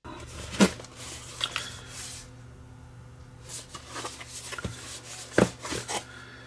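A small cardboard product box being handled and turned over on a bench: a few light knocks and rustles of the card, over a steady low hum.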